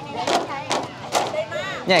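Bamboo poles of a bamboo dance (nhảy sạp) clacking together in a steady beat, about two and a half knocks a second, under the chatter of onlookers.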